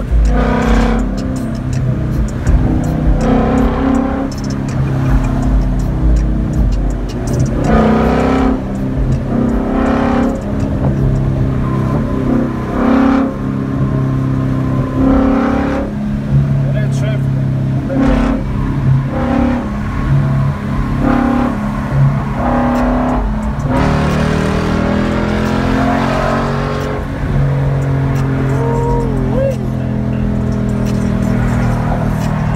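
2016 Ford Mustang GT's Coyote 5.0 V8 running at highway cruise, heard from inside the cabin as a steady low drone with road noise.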